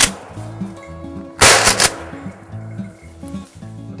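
A single shotgun shot about a second and a half in, sharp and loud with a brief echo, fired at a flushed ruffed grouse that is brought down. Background music plays underneath.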